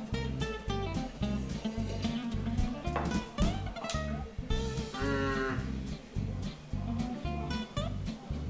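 Background music: plucked guitar notes over a steady, pulsing low beat.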